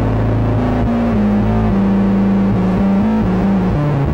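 Rock band playing a loud instrumental passage with no singing: electric guitar and bass carry a low line of shifting notes, following a held keyboard chord that cuts off just before.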